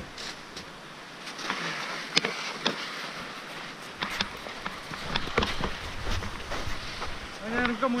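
Mountain bike tyres rolling over a packed snow track, a steady noise broken by scattered sharp knocks and rattles from the bike over bumps. A voice speaks briefly near the end.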